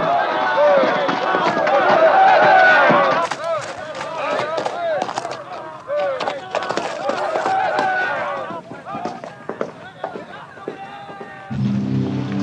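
Many men shouting and yelling in a gunfight, with sharp gunshots cracking out repeatedly from about three seconds in. Music comes in near the end.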